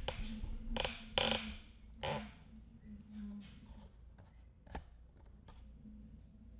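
Handling noise from a camera on its stand being moved back: a few short knocks and rustles, loudest in the first two seconds, over a faint steady low hum.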